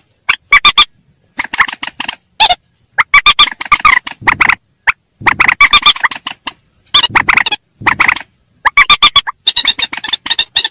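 Loud playback of a rail lure call (burung mandar): bursts of harsh, rapidly repeated calls, each under a second, separated by short silent gaps.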